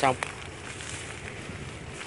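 A man's voice finishes a word at the very start, then steady outdoor background noise with a few faint rustles.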